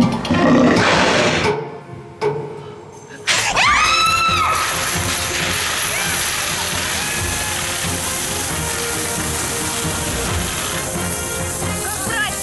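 A dense, steady clatter of metal coins raining into the treasure cage starts suddenly about three seconds in and keeps going, with excited screams at the onset and dramatic music under it.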